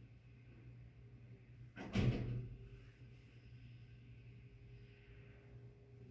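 Faint room tone with a low steady hum, broken by one short thump about two seconds in.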